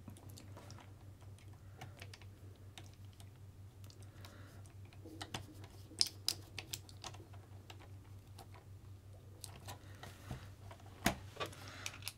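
Faint small clicks and ticks of a hand screwdriver turning a kingpin screw into an aluminium RC car front hub, with a few sharper clicks about halfway through and again near the end, over a faint steady low hum.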